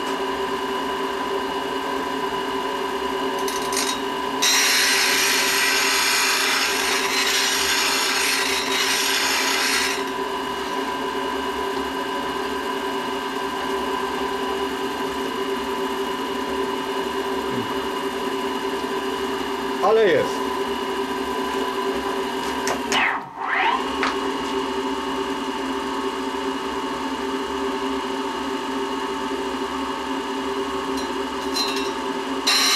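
Diamond-wheel grinder motor running steadily, with a thread-cutting lathe tool bit ground against the wheel for about five seconds early on, a loud hiss. Two brief sounds that slide down in pitch come about two-thirds of the way through.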